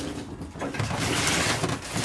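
Handling noise from lifting a heavy potted cactus wrapped in a woven plastic shopping bag: low shuffling and bumping, with a steady rustle starting about halfway through.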